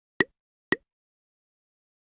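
Two short pop sound effects, about half a second apart, from an animated logo reveal.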